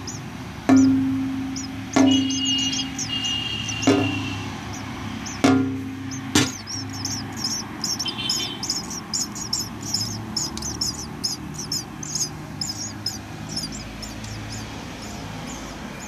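Five sharp knocks, each ringing briefly, in the first six and a half seconds, with a few thin high chirps among them. From about seven seconds in, nestling birds cheep rapidly, several high-pitched calls a second, to the end.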